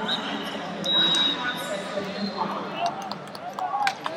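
Busy wrestling-arena hubbub of voices calling out, with wrestling shoes squeaking on the mat during a tie-up. A short high whistle blast sounds about a second in, and a sharp knock near the end.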